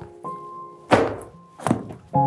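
Two soft thuds, about a second in and near the end, as sofa cushions are plumped and set down, over background music of held notes.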